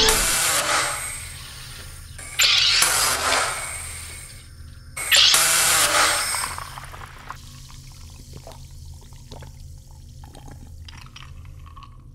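SodaStream home soda maker carbonating water: three loud gushing hisses of gas, each about a second and a half long, coming roughly two and a half seconds apart.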